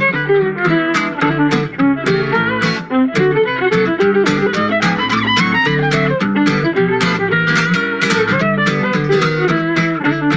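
Fiddle and acoustic guitar playing a swing tune: the fiddle carries the melody over the guitar's steady rhythm strumming.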